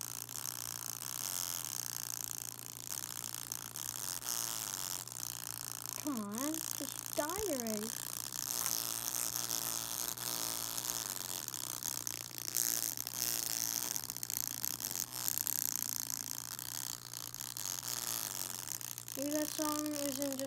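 A small 3-watt speaker with its cone burnt through, still being driven with music at full volume, gives out a harsh, hissing, buzzy distortion over a steady low hum, with a voice in the song briefly coming through about six seconds in.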